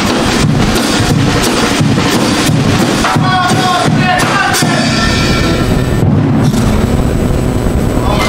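Murga drum section (bombo, redoblante and cymbals) playing a steady beat. Voices sing over it for a couple of seconds in the middle.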